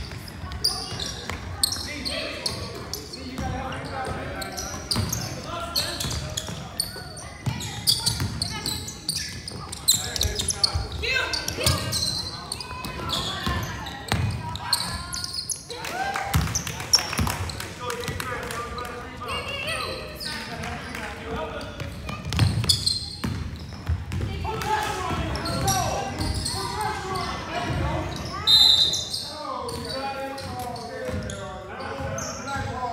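Basketball game in a large, echoing gym: a ball bouncing on the hardwood floor amid the shouts and chatter of players and spectators, with a short high squeak near the end.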